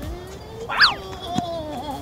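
A short cartoon-style sound effect: a quick high whistle that glides up and falls back about three quarters of a second in, followed by a brief click.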